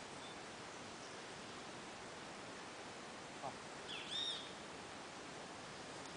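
A single brief bird call, a bright arching note about four seconds in, over faint steady outdoor hiss.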